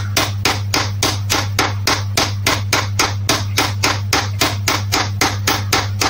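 Small hammer tapping lightly and quickly on an M10 bolt threaded into a power steering pump's pulley hub, an even run of about five metallic taps a second, driving the pump shaft out of the hub.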